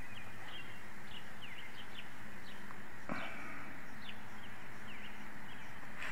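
Small birds chirping: a run of short, quick falling chirps over a steady low hum, with one brief louder sound about three seconds in.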